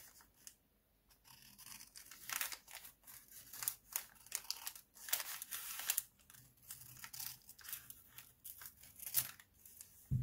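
Scissors cutting across the folded bottom of a brown kraft paper bag, a run of irregular short snips with paper rustling between them.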